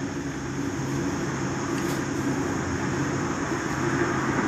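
Road traffic: cars passing on a multi-lane city road below, with a steady low hum under the tyre and engine noise.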